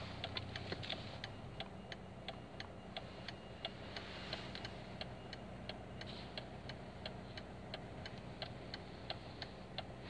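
A car's turn-signal indicator clicking steadily, about three ticks a second, over the low hum of the four-wheel drive's engine idling while the car waits at traffic lights.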